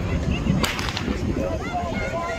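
A single sharp crack about half a second in: the starter's pistol firing to start the race. Spectators' voices can be heard around it.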